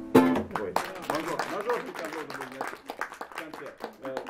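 A final chord strummed on a lute-guitar, a lute-bodied six-string guitar, ringing out briefly as the loudest sound, then voices and scattered clapping as the song ends.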